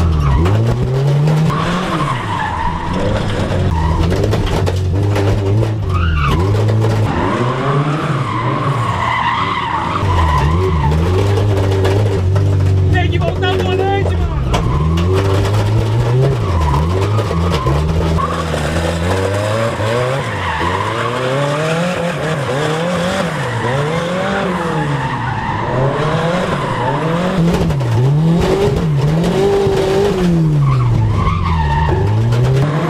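Turbocharged Chevrolet Chevette drift car with a VW AP engine, heard from inside the cabin during a drift run. The engine revs climb and drop again and again, quicker and choppier in the second half, over tyres skidding and squealing.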